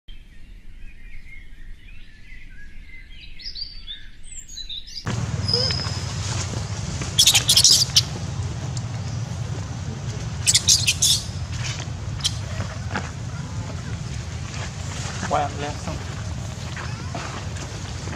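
Small birds chirping for about five seconds. Then a sudden switch to an outdoor recording with a steady low rumble. It carries a few short, sharp, high-pitched bursts: two clusters a few seconds apart and a shorter call later on.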